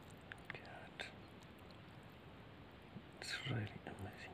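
Quiet handling of a small rough stone over gravel, with a few faint clicks in the first second. A short whispered sound of a voice comes near the end.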